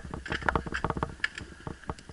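Mountain bike rattling over a rough dirt track: a fast, irregular string of clicks and knocks from the bike and camera mount, over a low rumble.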